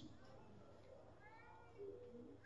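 Near silence, with one faint, short, high-pitched call near the end that rises and then falls in pitch.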